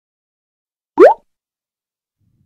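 A single short cartoon-style 'bloop' sound effect about a second in, sweeping quickly upward in pitch; it is an editing transition sound leading into the title card.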